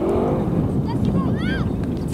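Children's high voices shouting short calls across the pitch, over a steady low rumble of wind on the microphone.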